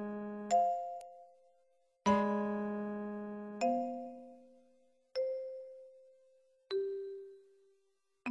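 Solo piano playing slow, sparse notes, each struck and left to ring until it fades: a fuller chord with a low bass about two seconds in, then single notes roughly every second and a half, stepping down in pitch.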